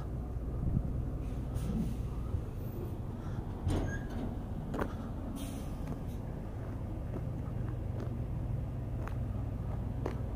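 Steady low rumble of an idling heavy-truck diesel engine, with a few scattered short clicks and knocks over it.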